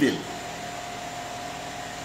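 A man's voice ends a word at the start, then a steady background hiss and hum with a faint steady whine, a fan-like room noise, fills the pause.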